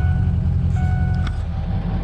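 Ford 6.0 L Power Stroke turbo-diesel V8 idling steadily just after an ice-cold start, having sat unstarted all night, heard from inside the cab.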